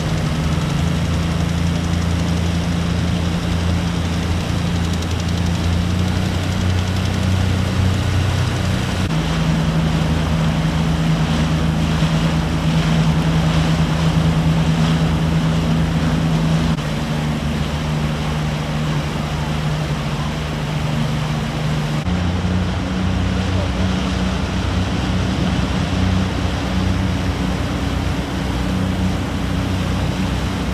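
Tohatsu 30 outboard motor driving an inflatable rescue boat under way: a steady engine drone whose pitch shifts a few times, over the rush of water and wind.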